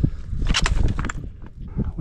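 Footsteps crunching on loose scree, with a cluster of stony crunches about half a second in, over a low rumble of wind buffeting the microphone.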